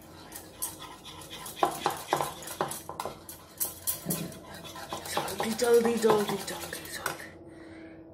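Wire whisk beating a flour-and-water batter in a plastic bowl: quick, irregular clicking and scraping strokes against the bowl, which die away about seven seconds in.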